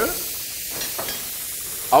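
Sliced button mushrooms frying in clarified butter in a pan, sizzling steadily. A voice comes in right at the end.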